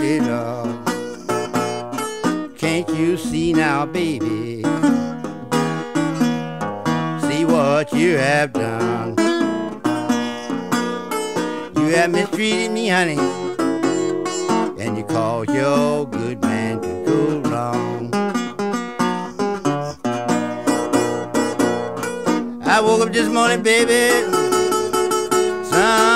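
Acoustic blues guitar played as an instrumental passage: a steady run of plucked notes, some bent so the pitch wavers.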